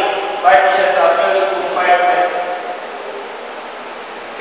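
A man speaking in a steady, lecturing voice. He talks from about half a second in until nearly three seconds, then pauses.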